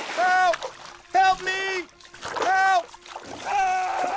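A high-pitched, cartoon-style voice giving four short arching cries, each about half a second long, with no words the recogniser could catch.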